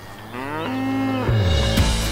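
A dairy cow mooing once: one long call of about a second that rises, holds steady, then falls away. Music comes in near the end.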